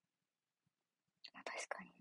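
Near silence, then a young woman begins speaking softly, almost in a whisper, a little over a second in.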